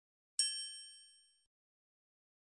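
A single bright, bell-like ding from a logo-reveal sound effect. It strikes about half a second in and its high ringing tones fade away within about a second.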